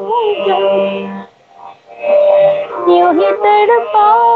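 A woman singing solo, her voice sliding and ornamenting between notes in two phrases with a short break about a second in. It comes through a video call, which gives it a thin, narrow sound.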